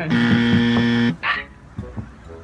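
A game-show style buzzer sounds once, a steady harsh tone lasting about a second, then cuts off. It marks that the player's time is up.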